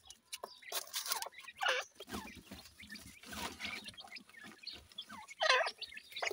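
Grey francolin and chicks calling with short clucks whose pitch bends downward, the loudest about five and a half seconds in, among light scratching in loose soil.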